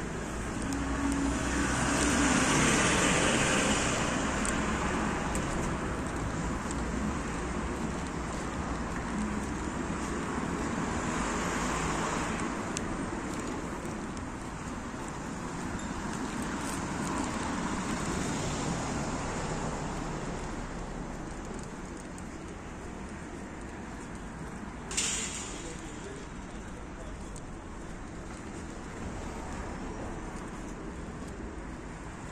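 Street traffic: cars passing one after another, the noise swelling and fading as each goes by, with one sharp short tap or knock late on.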